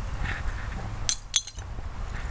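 A small metal hand rake working through dump soil, with light scraping and a few sharp clinks against debris in the dirt, two of them close together a little past a second in.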